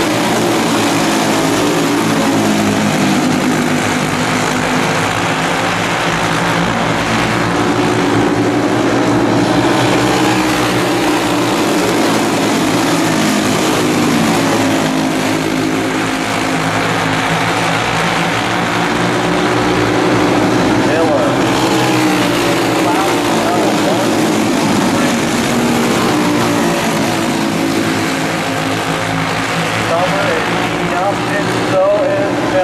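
A pack of racing kart engines running at speed around a dirt oval, several engine notes overlapping, their pitch rising and falling as the karts lift and accelerate through the turns.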